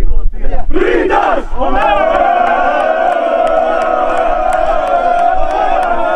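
A football team chanting together in a huddle: two short group shouts, then from about two seconds in one long shout held on a single note by many voices.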